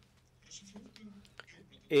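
A quiet pause in a man's talk into a microphone, with a faint low voice and a few small clicks; his speech starts again right at the end.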